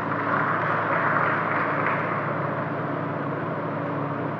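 Steady background noise with a low hum running under it, a little louder in the first couple of seconds, with no speech.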